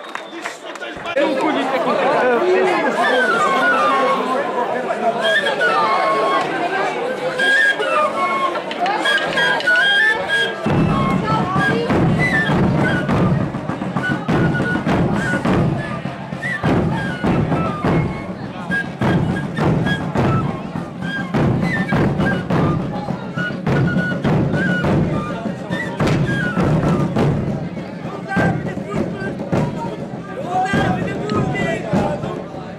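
A small flute playing a melody over crowd chatter. From about ten seconds in, a group of large bass drums joins with a heavy, steady beat under the tune.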